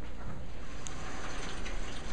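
Steady hiss of room background noise with a low hum underneath, as from the lit overhead projector's fan, and a few faint clicks near the end.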